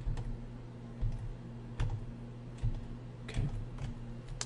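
Computer keyboard keys pressed, Ctrl plus the right arrow key, to step through saved camera shortcuts: a series of short, separate key clicks, roughly one a second.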